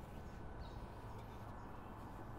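Faint, steady room tone with a low hum and a thin steady tone; no distinct handling sounds stand out.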